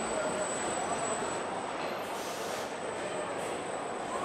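Car body-shop assembly line machinery running: a steady mechanical hum with a constant high whine, and a short hiss about two seconds in.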